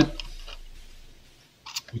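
Small plastic clicks from a wireless computer mouse being worked by hand, then one short sharp crack near the end as the left-click button's small plastic tab snaps off.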